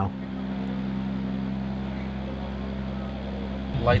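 A steady engine drone with a constant low hum, running evenly at one pitch.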